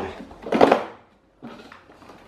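Telescopic pole of a Britânia Mega Turbo 40 pedestal fan being pulled up to raise the fan head: a short knock and scrape of the plastic housing on the chrome tube about half a second in, then a fainter rub. The pole had been set too low, which made it knock.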